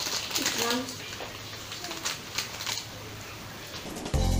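Crinkling and rustling of a chocolate bar's wrapper being handled, a quick run of small crackles that thins out after about two and a half seconds. A child says a single word near the start.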